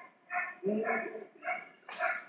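A dog barking repeatedly, about two barks a second, with one longer, lower-pitched sound about a second in.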